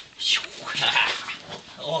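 A puppy making short high-pitched vocal sounds while tugging on a bite rag, one of them falling in pitch soon after the start. A man's excited voice calls out near the end.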